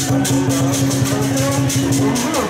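Procession music with a fast, steady percussion beat over a continuous low droning tone, with a wavering melody line above.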